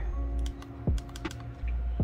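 Soft background music holding steady notes, with several light clicks as fingers press the buttons of a Sony ZV-E10 mirrorless camera that is not powering on.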